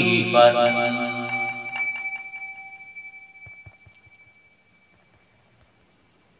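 A Buddhist bowl bell struck once, ringing on and slowly fading away over about four seconds to near silence.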